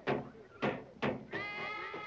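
Children shouting and yelling in short bursts, about two a second. About a second and a half in, a held musical chord comes in and carries on.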